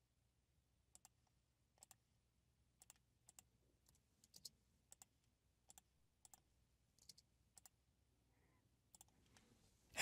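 Faint computer mouse and keyboard clicks, a dozen or so at irregular intervals, over near silence.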